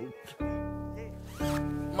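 Intro music: two sustained keyboard chords, the first about half a second in and the second about a second and a half in.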